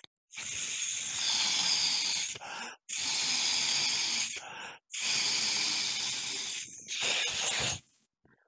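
A man blowing hard into the balloon of a balloon-powered plastic toy train through its funnel, in three long breaths of rushing air with short pauses between. His finger covers the whistle opening so the air goes into the balloon.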